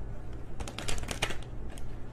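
A quick run of light clicks and taps starting about half a second in and lasting under a second, with a couple more near the end, over a steady low hum.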